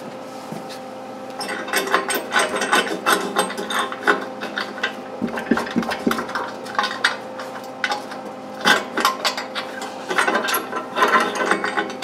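Steel angle pin being worked back and forth in a freshly tack-welded collar on a tractor's three-point rear blade, with rapid runs of metal clicking, rattling and scraping. The pin is binding in the tight new collar.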